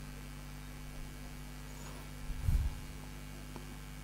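Steady electrical mains hum from a microphone and sound system between spoken phrases, with one brief low bump about two and a half seconds in.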